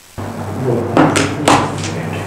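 Microphone audio cutting in with a steady electrical hum, followed by two sharp knocks about half a second apart, the clatter of the microphone or its gear being handled while the audio link is being fixed.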